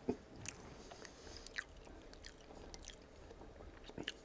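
Faint, close-miked chewing of a sauced fried chicken tender: soft wet mouth clicks scattered through, a few of them a little sharper.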